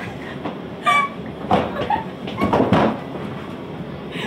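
Steady rumble and rattle of a moving passenger train car, heard from inside the car, with a few short bursts of laughter.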